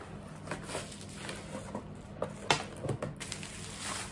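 Rustling and crinkling of a cardboard box and plastic bubble wrap being opened and handled as a blender is unpacked, with a few sharper crackles about two and a half and three seconds in.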